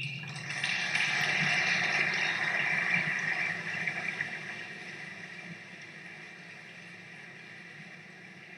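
Audience applauding: clapping that swells within the first second, holds for a few seconds, then dies away gradually.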